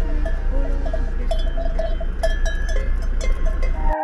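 Cowbells on walking cattle clanking irregularly, each clank ringing briefly, over a steady low rumble.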